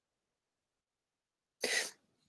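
Near silence, then a single short cough near the end.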